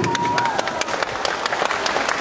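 Audience applauding, many hands clapping together.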